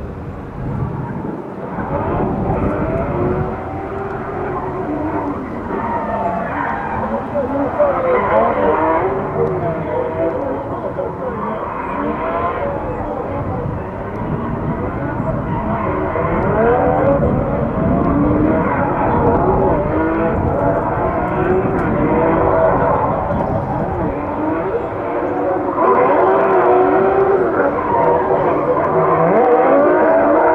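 Drift cars' engines revving hard up and down as they slide through the course, with tyres squealing. The sound grows louder toward the end.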